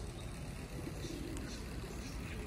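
Faint, steady low rumble of outdoor background noise, like distant traffic, with no distinct events.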